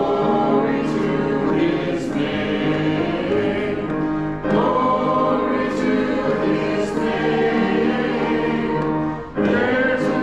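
Congregation singing a hymn together in long held phrases, with a brief pause between phrases about four seconds in and again near the end.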